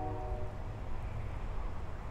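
Low steady outdoor background rumble, with a faint steady hum that fades away about half a second in.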